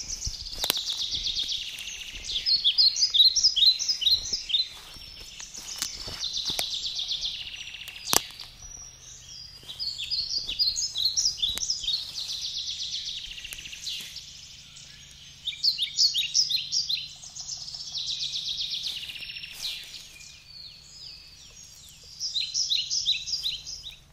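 A songbird singing the same high song over and over, a dense trill followed by a quick run of chirping notes, roughly every six or seven seconds. Scattered light rustles and clicks come from the dry leaf litter, and a faint low hum sets in about nine seconds in.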